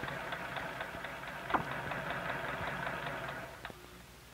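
Electric sewing machine stitching a seam, its motor running steadily with a light regular ticking. There is a sharp click about a second and a half in, and the sound drops away near the end.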